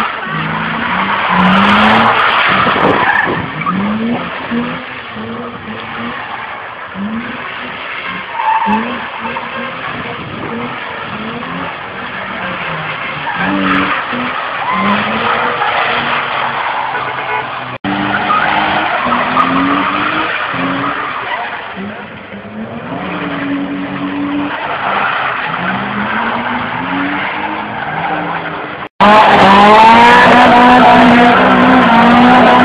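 Car engines revving hard over and over, each rev rising in pitch, as cars drift with their tyres skidding and squealing on wet tarmac. The sound cuts out briefly twice, the second time about a second before the end, and is louder after it.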